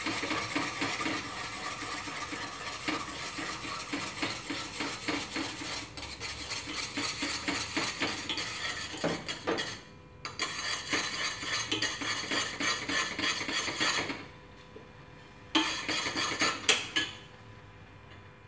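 Chopsticks stirring quickly in a stainless steel pot, clinking and scraping against the metal in a steady rhythm as tapioca starch thickens in boiling sugar syrup. The stirring breaks off briefly about ten seconds in and stops near the end, followed by a few separate knocks.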